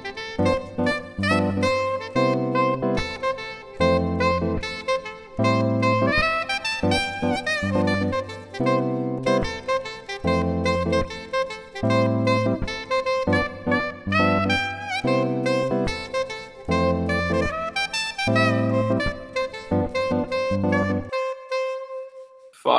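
Soprano saxophone playing an improvised melody over rhythmic backing music. The backing cuts off about a second before the end while the saxophone holds its last note.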